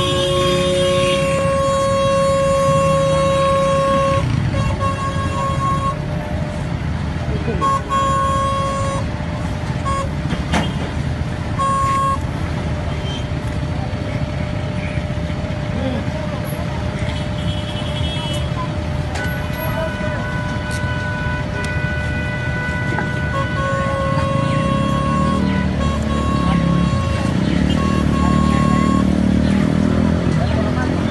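Car horns honking in stopped street traffic: a long blast of about four seconds at the start, then shorter toots, a higher-pitched horn about two-thirds of the way in, and more honking near the end, over steady traffic noise.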